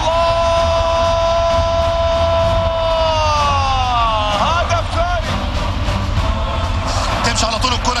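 Football commentator's long, held goal shout, steady for about three seconds, then sliding down in pitch, followed by a few more excited words.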